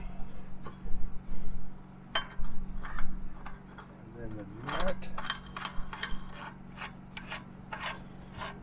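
Irregular scraping and clicking of metal parts as a pitless adapter's flange and external gasket are worked onto the hole in a steel well casing, over a steady low hum.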